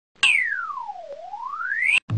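Synthesized electronic sweep tone used as an intro sound effect. It starts suddenly, glides smoothly down from a high pitch to a low one over about a second, then glides back up and cuts off abruptly.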